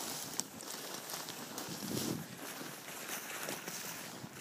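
Footsteps of people walking through snow and low tundra brush, a faint uneven scuffing and crunching.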